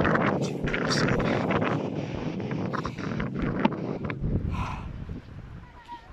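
Wind buffeting a phone's microphone in a rough, rumbling rush that eases off over the last two seconds.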